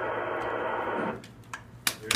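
Static hiss from a ham radio transceiver's speaker, an open channel with no voice on it, cutting off abruptly about a second in. Near the end comes a single loud, sharp clap.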